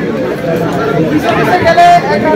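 Speech: a man talking loudly, ending on a drawn-out vowel, with crowd chatter behind.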